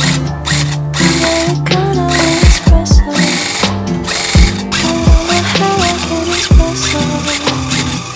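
Background music with a deep kick-drum beat, over the rapid mechanical chatter of a handheld electric tufting gun punching yarn into backing cloth, which runs in short bursts.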